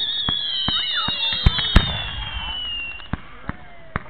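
Fireworks going off close by: sharp bangs and cracks of bursting shells throughout, the two loudest about a second and a half in with a low rumble after them. Over them a high whistle slides slowly down in pitch and fades out about three seconds in.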